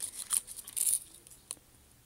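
Torn thin plastic blister tray crinkling as it is handled, in a few short rustles during the first second, with one sharp click about one and a half seconds in.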